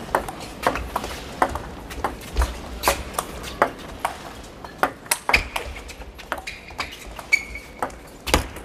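Table tennis rally: the celluloid ball clicks sharply off the rackets and the table in quick succession, a few strikes every second, in a large echoing hall.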